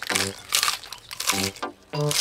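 Cartoon sound effect of a tortoise munching a lettuce leaf: a few short crunchy bites, over brief background music notes.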